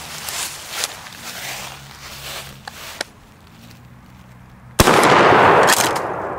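A 12-gauge pump shotgun (Ithaca Model 37) fires a slug about five seconds in, a sharp blast followed by about a second of echo. Before it there are only a couple of faint clicks as the gun is handled.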